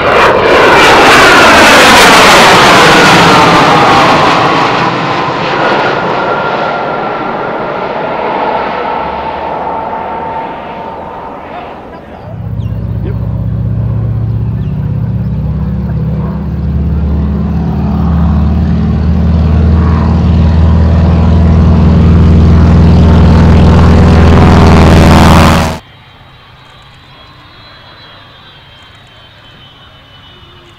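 BAC 167 Strikemaster jet passing overhead, its engine note falling in pitch as it goes by. About twelve seconds in, it gives way to the radial engine of a North American Harvard running at high power, a loud, deep, steady drone, which stops abruptly about 26 seconds in. A much quieter, thin, high jet whine follows.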